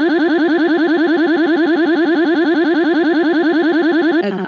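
Belle text-to-speech voice from VoiceForge doing a synthetic 'crying': one vowel syllable repeated very rapidly at a steady pitch, a continuous machine-like warble.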